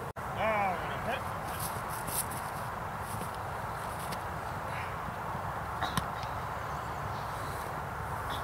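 Steady outdoor noise on a field, with a brief curving voice call about half a second in and a couple of sharp taps about six seconds in.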